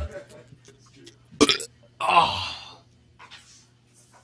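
A man burping loudly: a short sharp burst, then a longer, rough burp about half a second later that falls in pitch.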